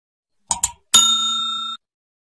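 Subscribe-button animation sound effect: two quick mouse clicks, then a bright notification-bell ding that rings for under a second and cuts off abruptly.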